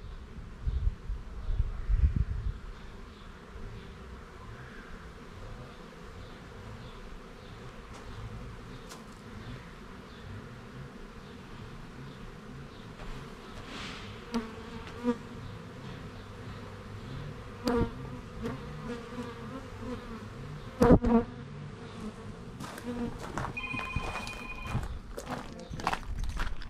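Honeybees buzzing in a steady drone around an opened beehive being worked for honey, with a few sharp knocks in the second half as the hive is handled.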